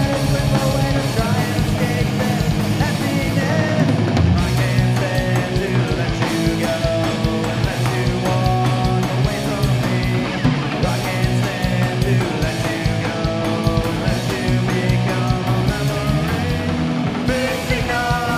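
Live punk rock band playing: distorted electric guitars, bass guitar and drums, played loud and without a break.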